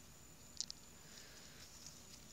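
Near silence: faint outdoor background hiss with a thin steady high-pitched tone, and a couple of brief faint clicks about half a second in.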